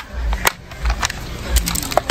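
Hard plastic lunch box and cutlery case being handled: a few sharp clicks as the lid snaps shut, one at the start, one about half a second in, and several close together near the end.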